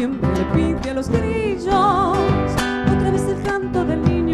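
A woman singing an Argentine folk song with strong vibrato on held notes, accompanied by guitars and a bombo drum.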